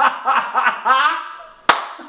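A woman laughing in a quick run of short, high bursts, followed by one sharp slap near the end.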